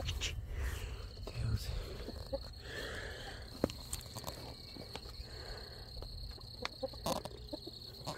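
Roosting chickens giving a few soft, quiet calls, with scattered clicks and rustles close to the microphone.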